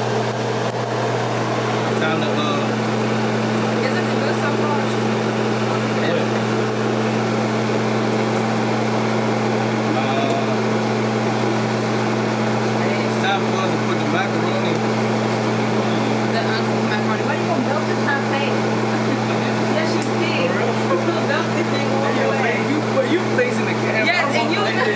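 A steady low hum under indistinct voices that carry on throughout.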